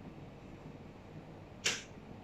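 A single short swish about one and a half seconds in, over faint room tone.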